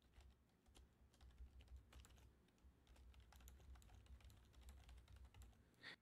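Faint typing on a computer keyboard: soft, irregular key clicks over a low steady hum.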